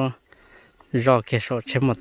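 People talking in short phrases, with a pause of just under a second near the start. Under the voices there is a steady high insect trill.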